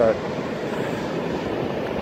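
Steady rush of ocean surf breaking and washing up a sandy beach, mixed with wind.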